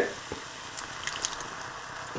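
Thick tomato sauce mixture going into a saucepan of rice and vegetables: faint soft squelching, with a few light clicks in the middle.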